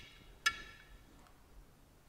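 A single light metallic clink about half a second in, ringing briefly with a bright tone: a small steel part touching inside a Muncie 4-speed transmission case.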